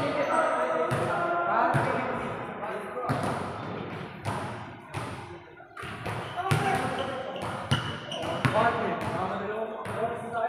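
Basketballs bouncing on a hard court floor: irregular thuds about once a second, with voices talking and calling out around them.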